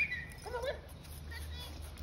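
Two Cane Corsos play-wrestling, heard faintly, with a short high-pitched vocal sound right at the start and another brief one about half a second later.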